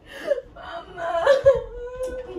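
A young woman whimpering and moaning as if in pain, ending in a drawn-out moan: a faked cry over period cramps.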